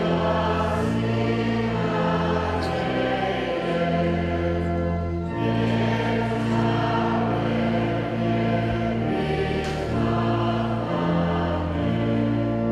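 A choir singing a slow church hymn in long held chords that change every second or two.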